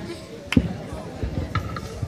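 A single heavy thump about half a second in, with voices in the background.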